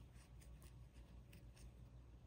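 Near silence, with the faint rustle and a few small ticks of a crochet hook working yarn.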